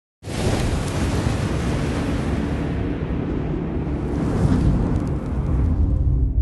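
Cinematic intro sound effect: a loud, rumbling rush of noise like thunder or surf that starts abruptly a fraction of a second in. Its high hiss thins out about halfway through while the low rumble carries on.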